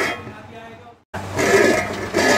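A covered steel pot of rice steaming and hissing on the stove. The sound fades over the first second, cuts out for a moment, then starts again.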